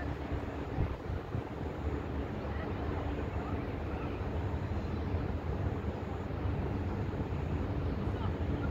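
Steady low rumble of outdoor background noise, with a faint hum underneath.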